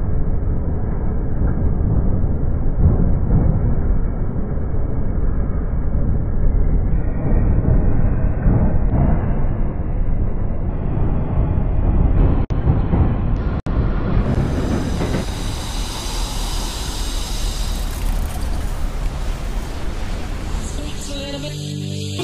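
Train running over a steel truss bridge, a loud low rumble that starts muffled and grows steadily brighter, opening out fully about two-thirds of the way in, with two split-second dropouts just before. Music with a steady beat comes in near the end.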